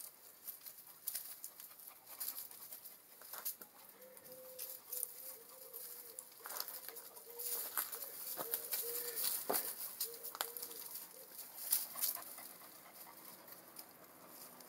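A pigeon cooing, a run of low repeated coos from about four seconds in until about eleven seconds in. Under it are scattered light rustles and clicks of dogs moving over dry leaves.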